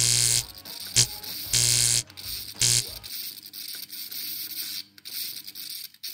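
Electronic buzzing static used as sound design for a logo animation: four short bursts of buzz and hiss in the first three seconds, the longest about half a second. A faint crackling hiss follows.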